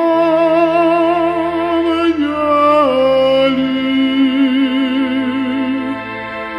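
Tenor singing a slow hymn in Bulgarian over sustained organ chords. The voice slides up into a long held note, steps down twice, then holds a lower note with a wide vibrato.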